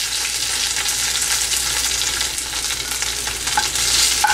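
Coated shrimp sizzling steadily in hot oil in a nonstick wok as they brown, with a slotted spoon stirring and turning them and giving a few light clicks against the pan.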